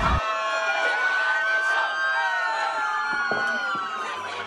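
A siren wailing with a slow rise and fall, over street noise.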